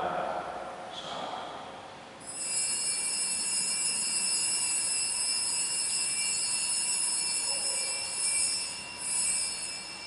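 Altar bells ringing with a steady, high, shimmering tone for about seven and a half seconds, starting about two seconds in and fading out near the end. They mark the elevation of the host at the consecration.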